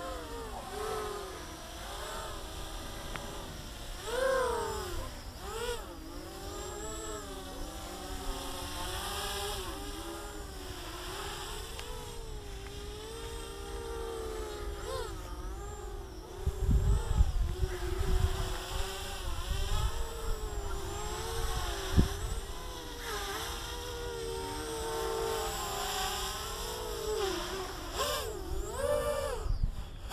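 Small quadcopter's electric motors and propellers buzzing in flight, the whine swooping up and down as the throttle is punched and cut during flips. A spell of low rumbling comes in past the middle, with a single sharp knock a couple of seconds later.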